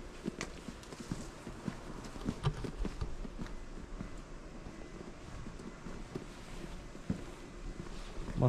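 Footsteps of a person walking on a paved lane, a series of short knocks about two a second.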